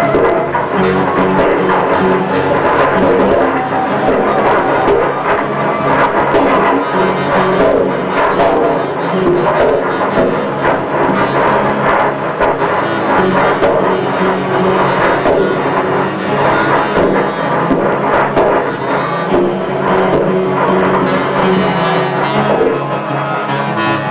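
Music: a dense, continuous texture over a sustained low drone, at a steady loudness.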